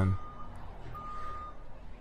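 A concrete mixer truck's reversing alarm beeping as the truck backs up: steady high beeps about half a second long, one a second, two of them here.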